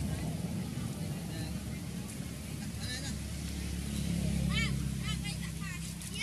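A few short, high squeaks, each rising and falling, from a baby macaque in the last second and a half, over a low steady rumble.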